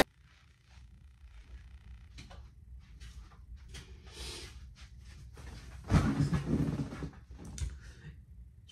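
Soft fabric rustling from a blanket over someone's head being shifted and then pulled off, loudest about six to seven seconds in, with a few light knocks near the end.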